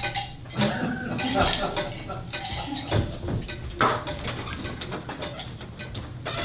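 Dishes and cutlery clinking and clattering, with scattered knocks and brief ringing tones between them.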